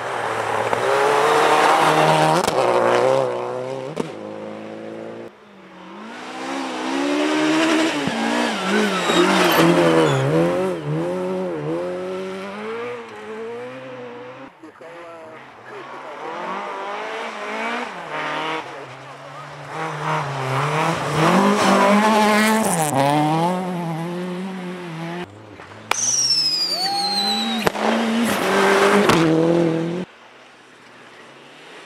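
Rally car engines at full throttle in several separate passes, the pitch climbing and dropping sharply with upshifts and lifts off the throttle, along with tyre noise on snow. The first pass is a Subaru Impreza STI rally car. Near the end there is a short high falling tone.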